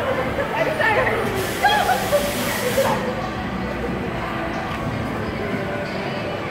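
A burst of air hissing for about a second and a half, typical of an amusement ride's pneumatic release, with riders' voices calling out around it.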